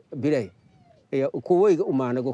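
A man speaking, with a pause of about half a second a little way in.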